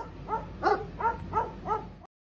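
Dogs barking in a quick, even run of about six short barks, roughly three a second.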